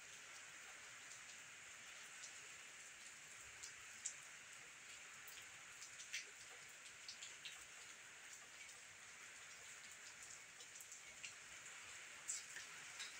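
Faint, steady rain falling, with scattered single drops ticking now and then; the clearest drops come about four and six seconds in.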